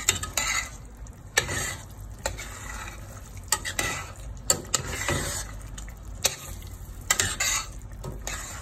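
A metal spoon stirring and scraping chunks of pork in thick shrimp-paste sauce around a stainless steel pot, knocking against the pot's side about ten times at uneven intervals. The sauce sizzles in the hot pot between strokes.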